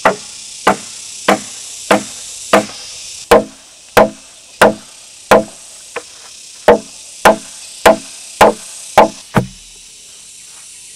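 Steady hammering on timber: a mallet driving wooden wedges into a post-and-beam joint of a wooden house frame, about fifteen blows, one every two-thirds of a second.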